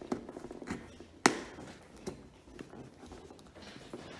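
A pointed hole-poking tool punched through a paper template into a cardboard box: an irregular series of short, sharp taps and pops, the loudest just over a second in.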